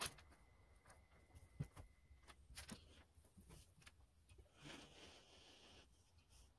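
Near silence, with faint scattered taps and a soft brief rustle about five seconds in.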